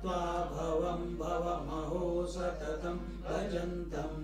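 A man chanting a Sanskrit verse in a melodic recitation, holding and stepping between notes in phrases, over a steady low hum.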